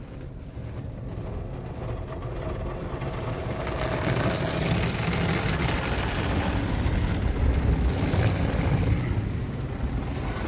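Automatic car wash heard from inside the car: a steady rush of water spray and soap on the glass and body, with the wash equipment working over the car. It grows louder over the first four seconds and then stays loud.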